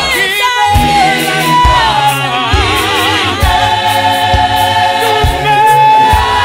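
South African clap-and-tap gospel choir singing in full harmony over a steady low beat just under a second apart. A held note wavers with vibrato about halfway through.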